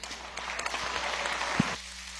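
A chamber full of legislators applauding. The clapping builds quickly just after the start and fades away near the end.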